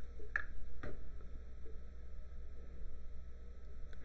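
Quiet room with a steady low hum and two faint short ticks about half a second apart in the first second.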